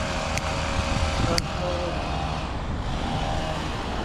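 Road traffic passing, a steady rumble and hiss of vehicles, with two brief sharp clicks about half a second and a second and a half in.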